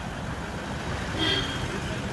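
Steady road and engine noise of a Toyota Land Cruiser SUV passing close at low speed, with a short higher-pitched sound a little past a second in.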